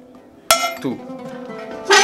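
A single hammer blow on a steel stamping punch held against a metal plate, stamping a flower motif, a sharp metallic strike about half a second in that rings briefly.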